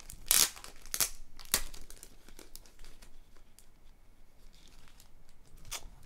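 Clear plastic sleeve and paper card packaging crinkling and rustling as it is handled, with three sharp crackles in the first two seconds, then softer rustling.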